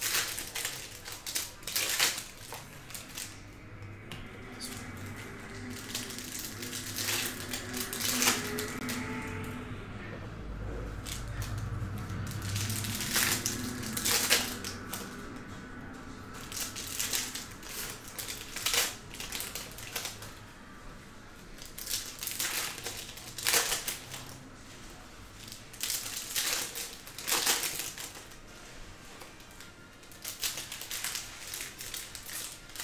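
Foil wrappers of Panini Donruss Optic trading-card packs crinkling and crackling as packs are opened and handled, with cards shuffled onto a stack, in irregular sharp bursts.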